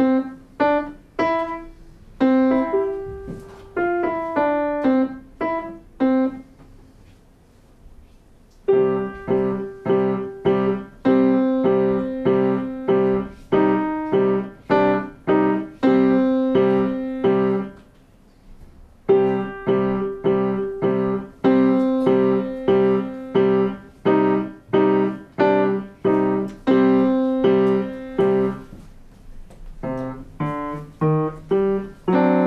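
Grand piano played by a child. A phrase of separate notes is followed by a pause of about two seconds, then quick repeated chords that break off for about a second and a half near the middle and start again.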